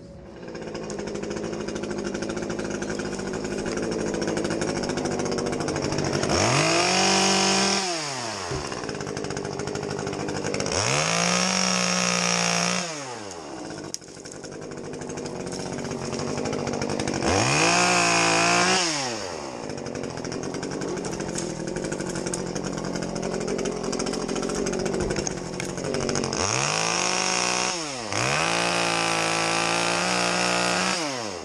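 Two-stroke chainsaw idling, revved up into a cut about four times, each time holding high for a second or two and then dropping back to idle.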